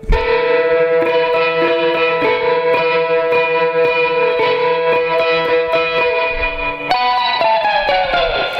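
Electric guitar playing a surf-style line of rapid tremolo-picked notes held at steady pitch, with a note change about seven seconds in followed by a slide downward in pitch near the end.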